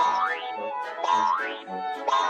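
Light background music for children, with a rising sliding sound effect that sweeps up in pitch twice, about a second apart.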